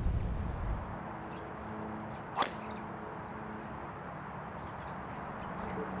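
A driver striking a golf ball off the tee: one sharp crack about two and a half seconds in, over faint background.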